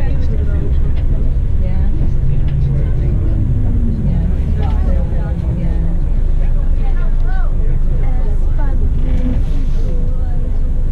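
Steady low rumble of a moving coach's engine and road noise heard inside the cabin, with passengers' indistinct voices talking over it.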